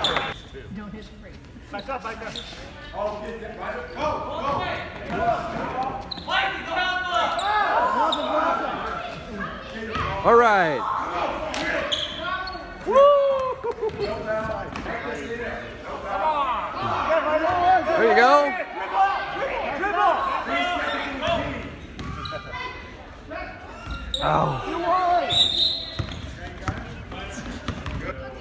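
A basketball bouncing repeatedly on a hardwood gym floor, amid shouting voices that echo in the large hall.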